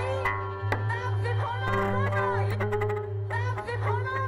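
Live experimental electronic music from synthesizers: a steady low drone under a held middle note, with pitched lines above that bend up and down in arcs, and a few short clicks.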